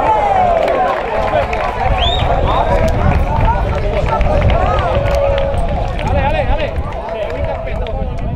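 Many voices from a football pitch and its stand overlapping at once, with shouts and chatter from players and spectators, over a steady low rumble.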